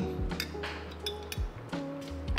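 Soft background music with a few light clinks of a metal spoon against a glass coffee server as coffee is scooped out to taste.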